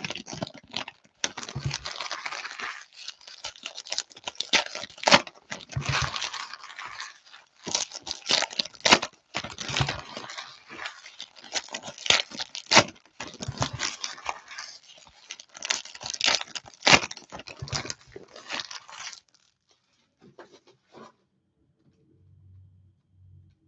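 Foil trading card pack wrappers being torn open and crinkled by hand, one after another, in a busy run of sharp rips and rustles that stops near the end.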